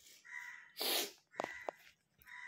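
Harsh animal calls repeating about once a second, with a louder noisy burst about a second in.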